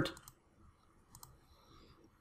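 A few faint computer mouse clicks in near silence: several just after the start and a pair about a second in.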